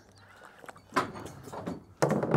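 Short sliding, clunking sounds from a metal sheep handler: one about a second in and a weaker one near the end.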